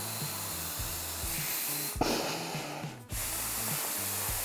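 A person blowing hard through the inflation tube of a hoodie's built-in inflatable neck pillow: a steady rush of breath that stops briefly about three seconds in, then starts again. Background music with a low bass line plays underneath.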